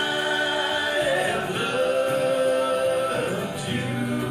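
Several male voices singing close vocal harmony, holding long chords that shift once or twice.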